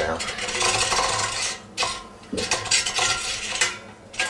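Stainless steel dip tube scraping and clinking against the metal of a stainless steel soda keg as it is pushed down into place, metal on metal. It comes in two spells with a short lull near the middle.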